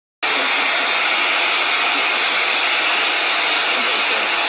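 Prife iTeraCare THz Health Blower wand running, its fan giving a steady blowing hiss.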